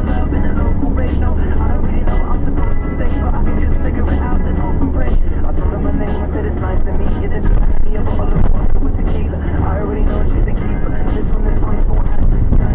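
Steady road and engine drone inside a Ford Transit van's cab at motorway speed, with a radio playing voices and music over it.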